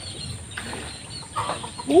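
Chickens clucking in the background, with short scattered calls, and a woman's brief 'uh' at the very end.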